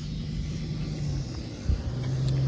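A steady low hum over a rumble, like a motor running. It dips slightly in pitch a little past halfway, and one short thump comes near the end.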